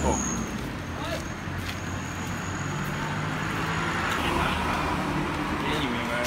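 Steady road traffic noise with a low hum, with faint voices in the background. A thin high whine runs through the first four seconds, then stops.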